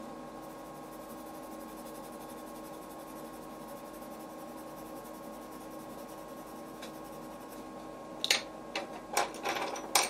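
A steady low background hum, with a few short scratchy strokes of a coloured pencil on paper near the end.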